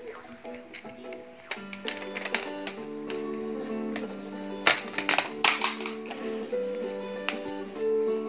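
Baby walker's electronic toy tray playing a simple melody of held notes, with a few sharp clicks of its plastic buttons being pressed a little past the middle.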